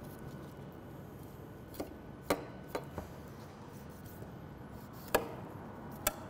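Knife cutting a raw chicken apart between the breast and the leg on a wooden cutting board: quiet slicing broken by five or six short, sharp knocks, the loudest about two and five seconds in.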